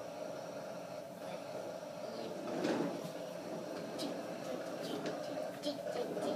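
Knocks and clicks from a child's plastic ride-on toy car on a tiled floor, a few sharp ones in the second half, with a child's faint voice about halfway through.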